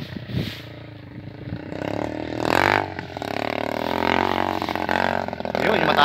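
Motorcycle engine revving under load as it climbs a steep hill trail, coming in about two seconds in, its pitch rising and falling with the throttle.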